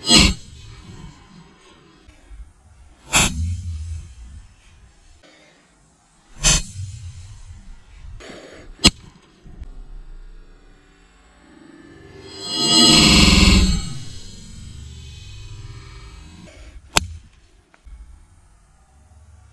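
Steel hand guard of a WTG V44X bowie knife struck hard against a stone block: sharp cracks a few seconds apart, five in all. A loud rushing swell of noise rises and falls for about two seconds past the middle.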